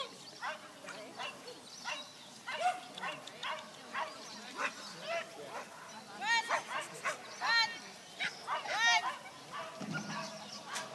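Dog barking and yipping repeatedly as it runs an agility course, short calls every half second or so, with three louder, longer barks in the second half.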